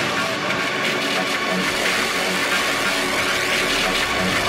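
Beatless stretch of an electronic psytrance–drum 'n bass track: a dense, steady synthesized wash of noise and sustained tones, with no drums.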